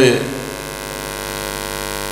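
Steady electrical mains hum with a buzzy stack of overtones from the microphone and sound system, holding level.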